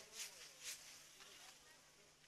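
Faint sizzling and hiss of chicken being sautéed in a wok over a gas burner, with two short scraping strokes in the first second.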